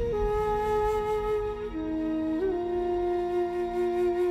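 Film score music: a slow melody of long held notes, stepping down near halfway and sliding up into a long final note, over a low sustained drone.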